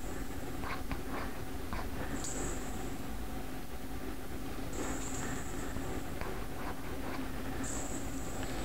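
A dense metal spring, jerked from both ends, slides and rattles on a hard tiled floor. There are faint clicks and short high squeaks every two to three seconds.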